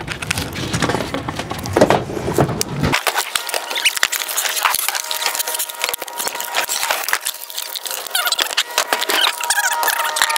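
Plastic wrapping crinkling and crackling as it is peeled off a new skateboard, many small close crackles. About three seconds in, the low rumble underneath drops out abruptly.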